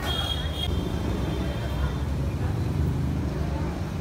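Night street noise: a steady low rumble with faint voices, and a brief high-pitched tone in the first half second.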